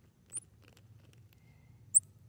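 Baby squirrel monkey giving two short, very high-pitched chirps: a faint one about a third of a second in and a sharp, loud one near the end.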